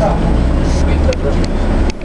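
Steady low rumble of a Flyer electric trolleybus under way, heard from inside the cabin, with a few faint clicks.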